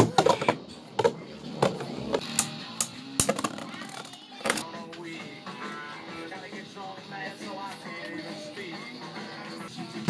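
Beyblade Burst spinning tops clashing in a plastic stadium: a run of sharp clacks over the first four or five seconds, then a quieter stretch. Music plays in the background throughout.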